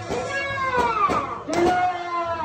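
Traditional procession music: a suona's reedy, nasal notes sliding and bending in pitch over percussion strikes about twice a second.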